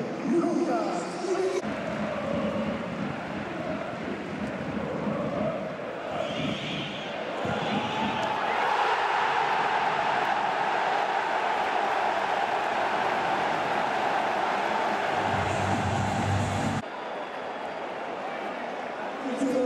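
Stadium football crowd, rising from a background din to a loud, sustained cheer about halfway through, which cuts off suddenly shortly before the end.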